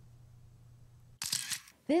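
A faint low hum, then past the middle a short camera-shutter sound effect: a quick burst of clicks lasting about half a second.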